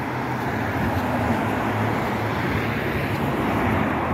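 Road traffic passing close by: a steady rush of tyres and engines from cars and a van, swelling gently as they go past.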